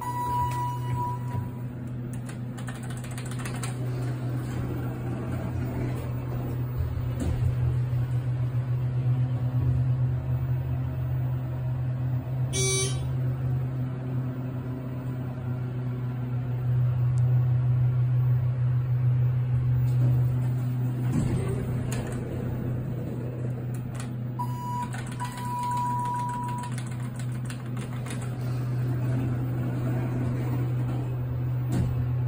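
Thyssenkrupp elevator cab running with a steady low hum. A single high electronic tone sounds near the start. About 25 seconds in, the elevator's signal chime sounds, a short tone then a longer one, and a sharp click comes around the middle.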